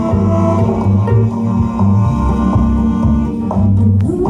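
Live instrumental music on cello and plucked upright bass, with deep bass notes under the cello's line.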